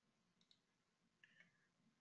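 Near silence: room tone with a few faint computer mouse clicks.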